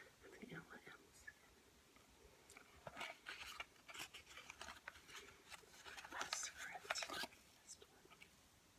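Soft, close-up handling of a cardboard flip-top cigarette box (L&M Menthol 100's) as it is opened: a dense run of crackly taps and rustles in the second half.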